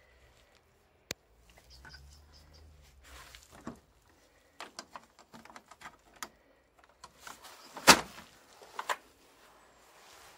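A folding aluminium picnic table case being unclasped and opened: a sharp click about a second in, scattered clicks and light handling noises of the metal frame, and one loud knock near the end, with a couple of smaller knocks after it.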